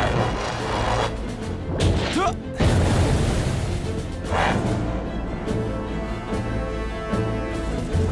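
Dramatic action score from a cartoon soundtrack, layered with booming impact effects. A loud hit lands about two and a half seconds in, and a swelling rush follows near the middle.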